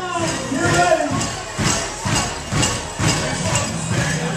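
Finish-line crowd noise with loud music and a drawn-out voice over a PA in the first second, followed by sharp, close hand claps about twice a second.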